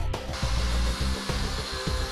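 Cutoff wheel cutting a metal bracket stud off flush: a steady high-pitched whine that comes in shortly after the start, with background music underneath.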